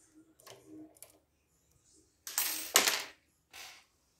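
Faint clicks of a dimple pick working in an EVVA DPI lock cylinder, then a louder rattling metallic clatter lasting under a second, about two and a half seconds in, followed by a shorter faint rattle.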